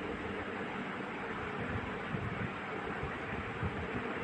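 Steady background noise, an even hiss with a faint low hum and some irregular low rumble, between spoken lines.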